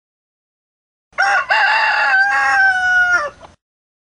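Rooster crowing once, a full cock-a-doodle-doo starting about a second in, its long last note held and dropping at the end. It marks daybreak.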